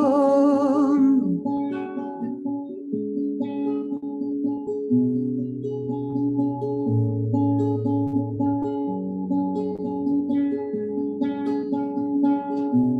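A woman's sung note with vibrato ends about a second in, then an acoustic guitar plays on alone, picked notes and chords over changing low bass notes.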